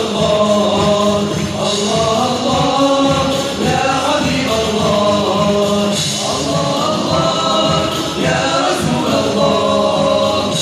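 A group of men singing an Islamic devotional song (nasheed) together over a steady beat, live in a large hall.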